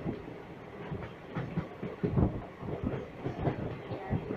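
Express passenger coach running at speed, heard from its open doorway: wheels rumbling and clattering over the rail joints, with a louder cluster of clatter about halfway through.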